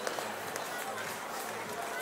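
Outdoor ice rink ambience: skate blades scraping and hissing on the ice among many skaters, with distant voices of people around the rink.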